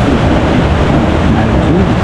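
Steady, loud rushing noise with a low rumble, and a faint voice briefly heard past the middle.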